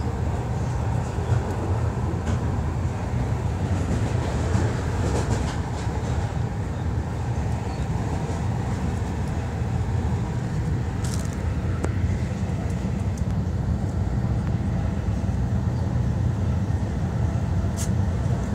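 Steady low rumble of a regional passenger train running, heard from inside the carriage, with a couple of brief clicks.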